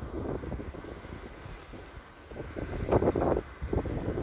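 Wind buffeting the camera's microphone: a steady low rumble, with a brief louder patch about three seconds in.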